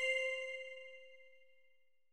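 A bell-like chime note from music ringing out and slowly fading away to nothing.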